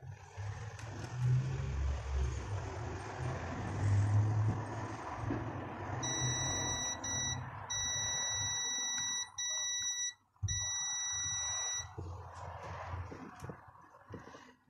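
A digital multimeter's continuity buzzer giving a steady high beep for about six seconds in the middle, cutting out briefly four times as the probe's contact on the circuit-board pads comes and goes; the beep signals a low-resistance connection between the probes. Before it, a few seconds of scratchy handling noise with low thumps.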